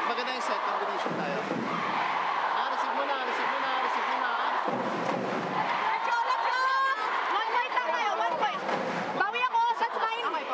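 A man's voice giving instructions in a close team huddle, with other voices and the chatter of an arena crowd around it.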